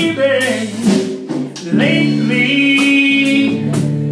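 Live band playing a soul song: electric bass guitar and drum kit with steady cymbal strokes about twice a second, while a man sings long held notes.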